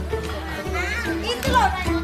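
Children's voices, high shouts and calls sliding up and down in pitch, over background music with a steady bass line.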